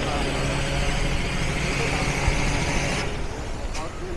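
A machine engine running steadily, a low hum with a hissing whine above it, which drops away about three seconds in.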